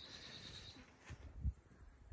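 Faint outdoor ambience: a faint high steady tone in the first half second, then a few soft low thuds about a second and a half in.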